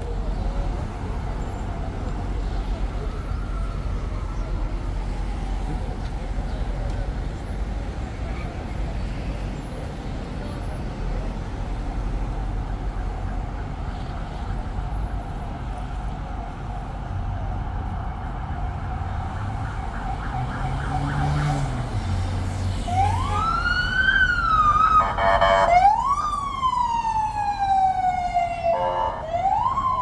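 Steady low street-traffic rumble, then an emergency-vehicle siren starts about two-thirds of the way in. It wails up and down in long sweeps, broken twice by short fast yelps.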